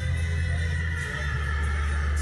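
A horse whinnying: one long call that falls slightly in pitch, over background music with a deep bass.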